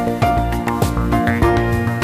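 Instrumental opening theme music with held notes over a steady beat.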